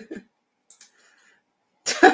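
A woman gives a short cough. Near the end a burst of laughter starts.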